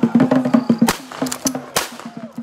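Traditional percussion playing a quick rhythm, about four strikes a second, with a low steady pitched note under it that thins out about halfway through. Two sharp cracks cut through, about a second in and near the end.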